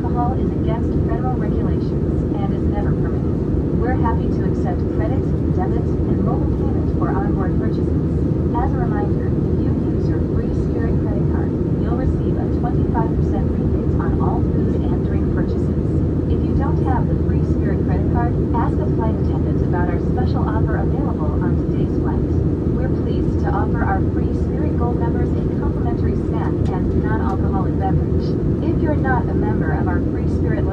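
Steady cabin noise of an Airbus A319-132 climbing out, heard from a window seat by the wing: its IAE V2500 turbofans and the airflow make a dense, even low rumble. Indistinct passenger chatter runs over it.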